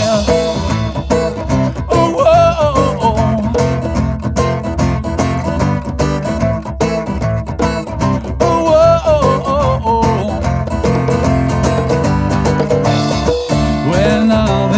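A band playing an instrumental break between sung verses: guitars over bass and drums, with a melodic lead line bending up and down in pitch twice.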